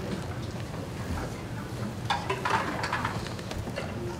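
Rustling and soft handling knocks as a group of children lift their violins and bows into playing position, with a louder burst of rustle about two seconds in.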